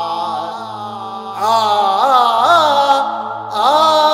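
Chant-like singing: a single voice with long sweeping pitch glides over a steady low drone, swelling about a second and a half in and pausing briefly near the end.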